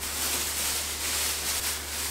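Clear plastic bag rustling and crinkling steadily as a plush toy wrapped in it is pulled out of a packed box. It starts abruptly.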